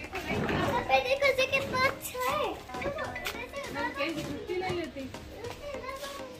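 Children's voices and chatter, a small child's voice among other people talking, with a few sharp knocks.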